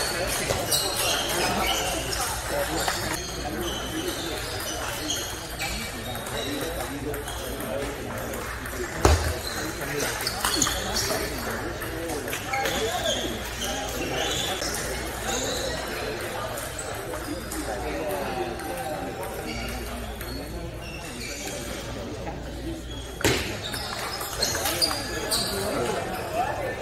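Table tennis rallies: the ball clicking off paddles and the table, with the loudest knock about nine seconds in, over steady background talk in a large hall.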